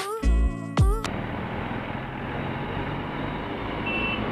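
Background music with a beat for about the first second, then it cuts suddenly to the steady running noise of a motorcycle ride: engine hum under even wind and road noise. A short high beep sounds near the end.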